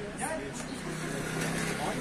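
Distant, indistinct voices over outdoor street background, with a steady low hum from about a second in.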